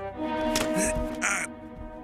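Cartoon background music of held notes, with two short noisy bursts about half a second and a second and a quarter in.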